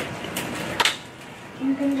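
A boy speaking haltingly: a pause of about a second and a half with room noise and a couple of brief clicks or hisses, then his voice again near the end.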